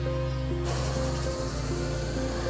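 Background music, joined about two-thirds of a second in by the sudden steady hiss of a jeweller's blue-flame torch heating a thin gold strip.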